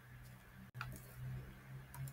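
Two faint computer keyboard key clicks, about a second apart, as digits are typed into a spreadsheet, over a low steady hum.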